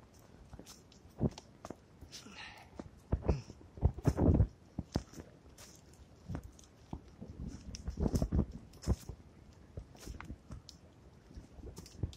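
Footsteps crunching and rustling through fallen leaves and twigs on a woodland floor, irregular, with the loudest crunches about four seconds in and again around eight seconds.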